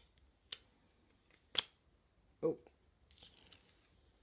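Protective plastic film being peeled off a Motorola Moto G smartphone's screen: two small sharp clicks, then a faint high peeling hiss near the end.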